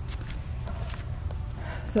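Footsteps crunching lightly on dry leaf litter and wood-chip mulch as the person filming turns around, over a steady low rumble on the phone's microphone.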